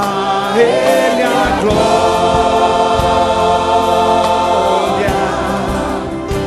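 Church choir singing a gospel hymn. It opens on a rising phrase and then holds one long chord through most of the middle.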